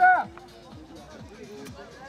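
A loud, high-pitched shouted call right at the start, then quieter voices and music in the background.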